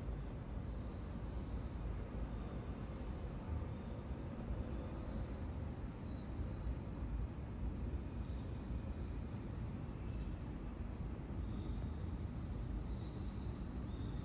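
Steady low rumbling outdoor background noise, with a faint thin high tone coming and going near the end.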